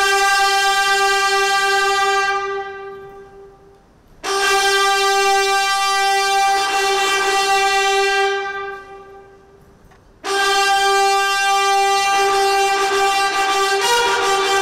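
Ceremonial brass fanfare, trumpets sounding three long held notes on one pitch. Each of the first two notes dies away slowly in the hall's echo, and the third is still sounding at the end with other notes joining in as the fanfare goes on.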